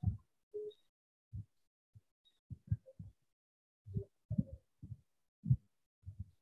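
A series of irregular, muffled low thumps, a dozen or so over a few seconds, with dead silence between them as a call's noise suppression cuts in.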